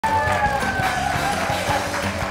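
Music with a steady beat and a held melody line.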